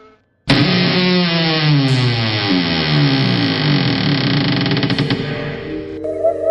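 A horror sound effect: after a brief silence about half a second in, many pitched tones sound together and slide slowly downward in pitch. Steady held tones join them near the end.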